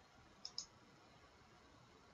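Two quick clicks of a computer mouse button, opening the Windows Start menu, about half a second in; otherwise near silence.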